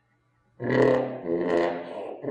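Trombone played with a plunger mute held over the bell, sounding low, rough notes that begin about half a second in after a brief silence, with a short dip in the middle.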